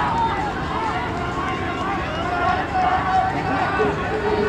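Trackside spectators shouting encouragement, several voices overlapping, as a pack of distance runners passes on a running track, with the runners' footfalls beneath.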